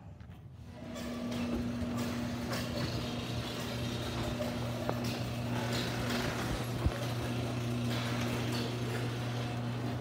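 Electric garage door opener running as the door goes up: a steady motor hum with the rumble of the door travelling, starting about a second in, with a single knock near seven seconds in.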